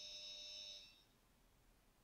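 Near silence: a faint, steady high-pitched electrical whine that cuts off about a second in, leaving silence.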